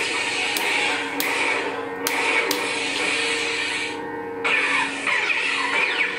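Proffie-board Neopixel lightsaber's sound font playing through its speaker: a steady electric hum broken by several clash effects, each a sharp crack followed by crackling noise, set off as the blade is struck for the flash-on-clash feature.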